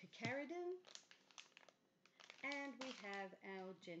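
A woman talking in a small room, with a run of short clicks and crinkles in the gap between her phrases as product bottles and packaging are handled.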